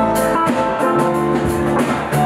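A band playing: guitar notes over a drum kit with regular cymbal strokes.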